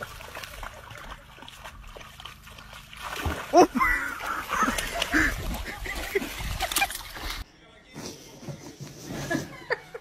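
Dog splashing through shallow water and plunging in, with people's voices over the splashing; the sound cuts off abruptly about seven seconds in.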